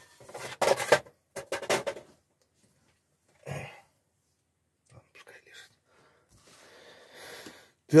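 Paper magazines being handled and moved on a wooden table in a few short, irregular rustles, with some indistinct muttering.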